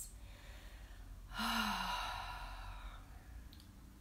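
A woman's long sigh about a second in: a brief voiced note at the start, then a breathy exhale that fades away over about a second and a half.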